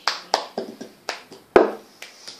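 Cup song rhythm played on a tabletop with a plastic cup and hands: a quick run of claps, taps and cup knocks. The loudest is a heavier knock of the cup on the table about one and a half seconds in.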